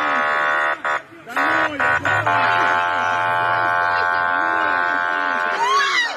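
Armored truck's horn blaring in a long blast, broken about a second in by a couple of short honks, then held again for several seconds; it is sounded at people blocking the truck's path, with their voices underneath.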